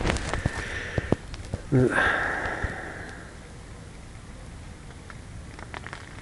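Faint, steady outdoor background with a few small clicks. In the first couple of seconds there is a breathy hiss and a single spoken word.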